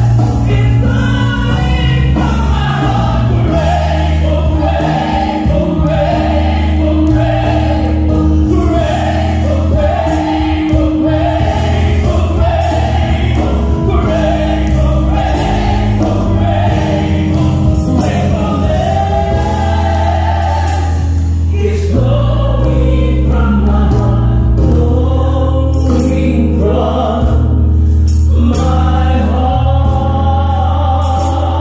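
Gospel music: a choir singing over instrumental accompaniment with a deep, sustained bass and regular cymbal strokes.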